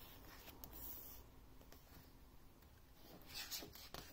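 Faint rustle of photobook pages being turned by hand: a soft paper swish about half a second in and another near the end.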